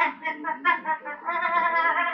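A woman's wordless vocal sounds: a quick run of short voiced bursts, then a longer held sound beginning about a second in.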